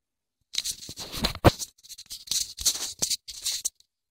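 Irregular rustling and scraping from a phone being handled and rubbed right at its microphone, starting about half a second in and cutting off shortly before the end.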